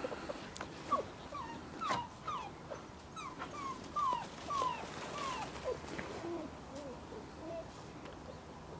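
Puppies whimpering and yipping in a string of short whines that each fall in pitch, thinning out near the end.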